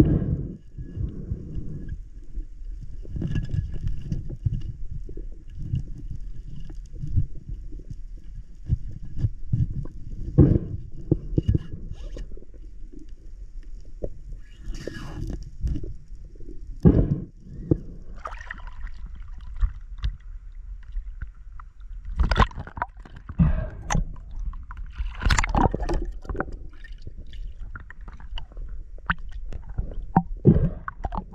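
Muffled underwater sound through an action camera's waterproof housing: irregular low rumbling from water movement, with scattered knocks and bumps as a speared fish is handled on the spear shaft and line.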